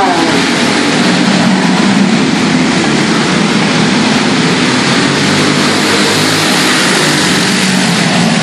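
Several small racing kart engines running together at racing speed, their pitches rising and falling as the karts go around the oval.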